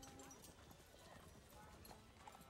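Near silence: a pause between speakers with only faint scattered ticks.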